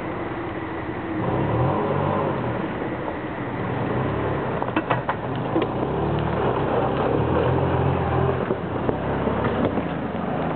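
Mitsubishi Pajero's V6 engine pulling the 4x4 slowly through a muddy rut, revving up about a second in and again in the second half. There are a few sharp knocks about halfway through.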